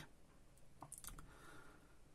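Near silence: room tone with a few faint clicks around the middle.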